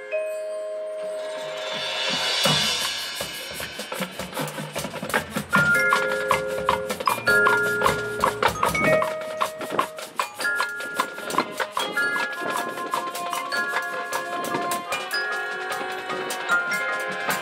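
Marching band front ensemble playing: glockenspiel, marimba and vibraphone notes ring out, with a shimmering swell about two seconds in and a fast ticking percussion rhythm from about four seconds on.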